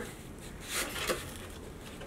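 Faint handling of a hatchet's cardboard packaging: a couple of brief rustles and scrapes as the hatchet is worked free of its cardboard backing.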